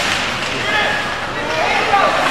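Indistinct voices of spectators and players calling out at an ice hockey game in an indoor rink, over a steady haze of rink noise.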